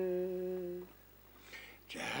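The last held note of a chanted Tuvan song: one steady low voice with strong overtones, fading and ending about a second in. Brief near silence follows.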